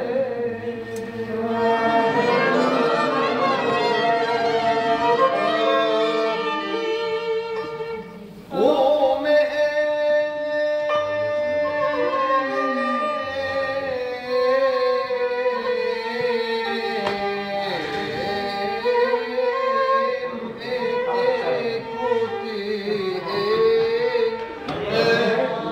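Violin playing a melody in the Arabic Nahawand maqam, with men singing a piyyut (Hebrew liturgical song) over it. The music breaks off briefly about eight seconds in, then a new phrase starts.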